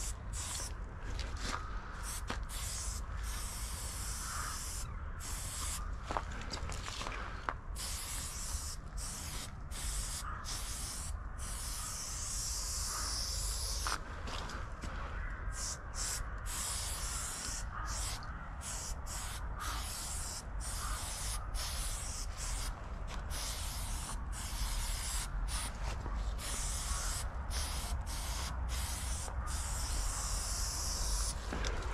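Aerosol spray paint can spraying in many short strokes, the hiss cutting off and starting again dozens of times as the nozzle is pressed and released.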